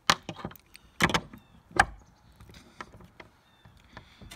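A few sharp knocks and bangs of hard objects, the loudest near two seconds in, followed by faint handling noise.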